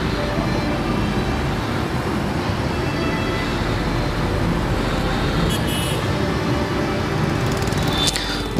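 Steady city road traffic, motorbikes and cars running past on a busy street.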